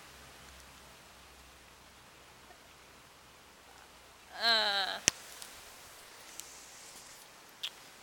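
Quiet background hiss. About halfway through comes a short wordless vocal sound from a person, cut off by a single sharp click.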